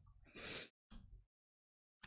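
Near silence, broken by a man's soft breath lasting about a third of a second, about half a second in.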